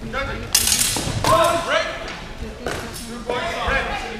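Shouting voices in a large echoing hall, with a sharp impact about half a second in and a second one near three seconds, from an exchange of blows between two fencers in a historical European martial arts (HEMA) bout.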